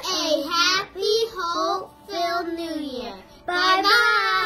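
Children singing a short phrase in several held, wavering notes with brief breaks between them.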